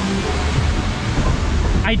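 Steady rush of water along a log flume channel, mixed with wind rumble on the microphone.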